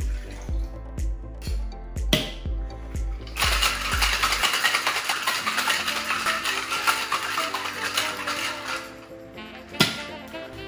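Ice rattling hard inside a metal cocktail shaking tin set for about five seconds as a pineapple-rum cocktail is shaken, over background music with a steady beat. A metal knock comes about two seconds in, before the shaking, and a single sharp crack comes just before the end.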